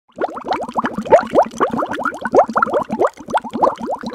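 Bubbling water sound effect: a quick, dense stream of short rising bloops, several a second.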